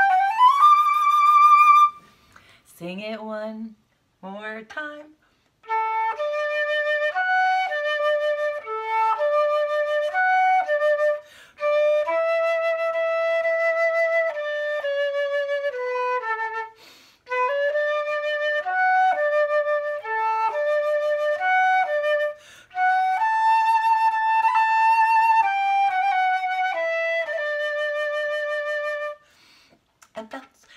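Silver flute playing a melody of held notes in short phrases with brief breaks between them, opening with an upward slide into a high note. In a pause about three seconds in, a woman's voice is briefly heard.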